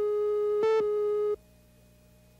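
Videotape countdown-leader tone: a steady, mid-pitched tone with a brighter beep about once a second, marking the countdown. It cuts off suddenly about a second and a half in, leaving only faint hum before the commercial starts.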